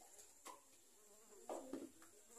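Near silence: faint room tone, with a brief insect buzz about one and a half seconds in.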